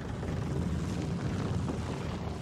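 Logo sound effect: a dense, rumbling rush of noise with no clear pitch, heaviest in the low end.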